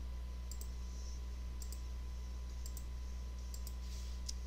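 Computer mouse clicking in close pairs, about once a second, as anchor points are placed, over a steady low hum.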